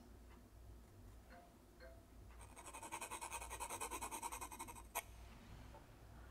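Graphite H pencil scratching on textured cold-press watercolour paper: a faint run of quick back-and-forth shading strokes, about six a second, for two or three seconds, ending in a single sharp tick.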